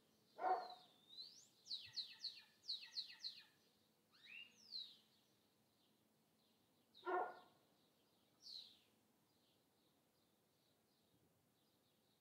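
A dog barks twice, once about half a second in and once around seven seconds in. Between the barks a bird calls with a quick run of high, descending chirps, followed later by a few scattered faint chirps.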